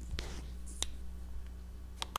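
Steady low electrical hum of a narration recording between sentences, with a couple of faint short clicks, one about a quarter second in and one near the middle.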